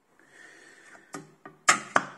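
A soft breath in, then a few sharp clicks as the flexible magnetic steel sheet on the resin printer's build plate is handled and flexed. The last two clicks, just before the end, are the loudest.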